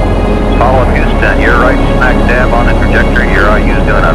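Deep, steady rumble of a Saturn V rocket's engines in flight, with a person's voice speaking over it from about half a second in, its words not clear.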